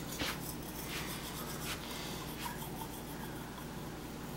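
A manual toothbrush scrubbing teeth: a quick, irregular series of short scratchy strokes that thin out after about two seconds, over a faint steady low hum.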